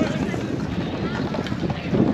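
Wind rumbling on the microphone, with indistinct voices of players talking in the background.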